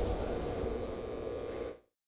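Neon-sign sound effect: a steady electric hum and hiss that slowly fades, then cuts off abruptly near the end.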